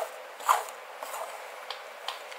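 Plastic wide-tooth comb drawn through a bob haircut on a mannequin head: a short stroke at the start and a stronger one about half a second in, then a few faint ticks.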